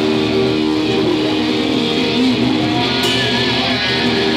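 Electric guitar playing held, ringing chords in a rock band rehearsal. A single cymbal crash comes about three seconds in.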